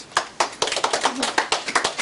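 A small audience applauding: a handful of people clapping their hands, starting just after the sound begins and going on steadily.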